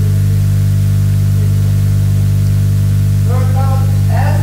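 Steady, loud electrical mains hum with a faint hiss underneath. A voice starts speaking near the end.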